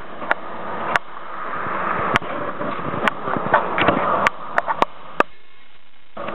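Road traffic noise, a steady rush that swells and eases, with about ten scattered sharp clicks and knocks; the rush drops away abruptly shortly before the end.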